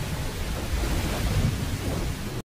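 Rain falling with a low rumble of thunder: a steady hiss of rain over a deep rolling rumble, with no music.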